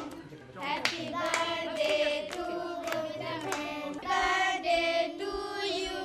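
A group of voices, children among them, singing together with hand claps.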